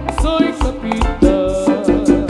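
Latin dance music from a band: sustained melody notes over a quick, steady percussion beat.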